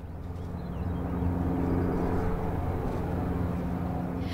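A motor's steady drone with a low hum, growing a little louder over the first second and then holding level.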